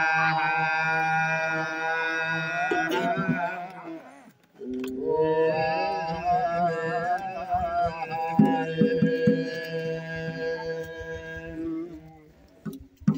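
A memorial chant sung in long, held notes that waver slightly, broken by a pause for breath about four seconds in. Soft low taps join in the second half.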